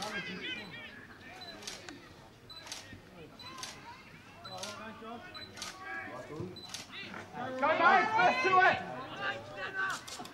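Single-lens reflex camera shutter clicking about once a second, one frame at a time, over faint voices. A loud shout of voices comes near the end.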